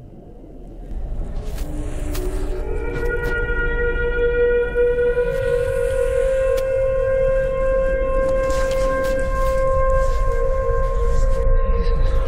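Sci-fi spaceship sound effect: a deep rumble joined by a chord of held, siren-like horn tones that enter one after another over the first few seconds, then hold steady.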